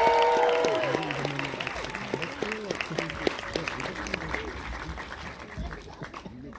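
Audience applause and cheering. Shouts and whoops stop about a second in, and the clapping then thins out and fades away.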